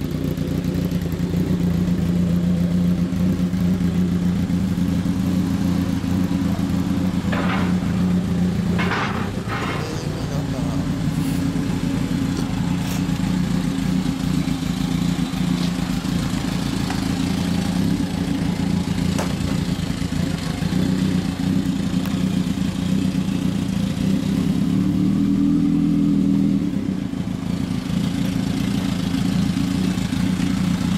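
Kawasaki Zephyr 1100's air-cooled, double-overhead-cam inline-four idling steadily through a MID-KNIGHT aftermarket exhaust. The engine note rises briefly a few seconds before the end, then settles back to idle.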